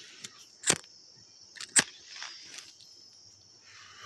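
Crickets chirping faintly and steadily, with two sharp clicks about a second apart, the first under a second in.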